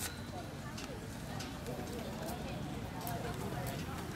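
Background chatter of several voices with scattered sharp clicks, typical of inline skates being set down and clacking on the track surface as the skaters shuffle about.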